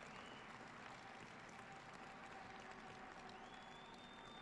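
Near silence: faint background hiss.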